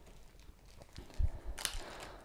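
A small plastic zip-lock bag picked up off a table and handled: a soft knock about a second in, then a brief plastic crinkle.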